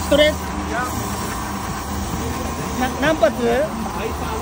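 Steady background hubbub of a busy street market, with brief bursts of people's voices near the start and again about three seconds in.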